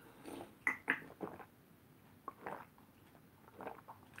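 A person drinking water from a plastic bottle: faint gulps and swallows, a handful of short, irregularly spaced sounds.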